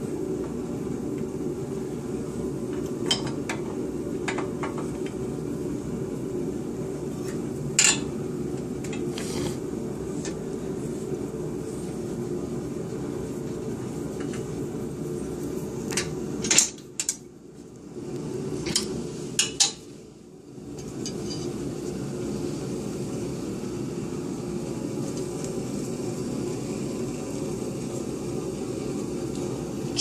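Scattered metal clinks and knocks from setting and locking a wood lathe's tool rest, with a cluster of them about two-thirds of the way through. A steady low hum runs underneath.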